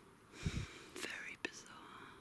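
A person whispering, with a short low thump about half a second in and a sharp click about a second and a half in.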